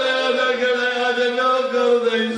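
A man chanting in a sung religious recitation, a zakir's majlis style, holding one long note with a slight waver.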